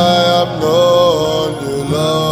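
A man singing a gospel worship song without clear words: long held notes that slide up and down in pitch, with a lower note near the end, over steady keyboard chords.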